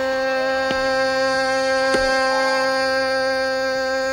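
Hindustani classical music: one long note held steady, with a couple of light tabla strokes.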